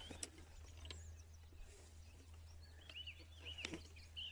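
Quiet outdoor ambience with faint small-bird chirps over a low steady hum; a few short chirps come close together near the end.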